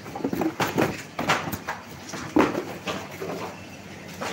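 Irregular clicks, knocks and rustles of okra pods and white cardboard export cartons being handled. The loudest knocks come about one and a quarter seconds in and again at about two and a half seconds.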